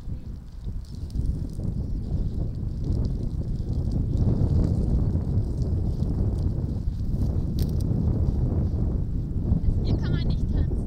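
Wind buffeting the microphone: a steady low rumble that grows louder after the first second.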